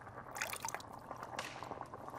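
Stew bubbling in a pot, with small liquid pops and drips, over the scattered sharp crackles of a wood fire.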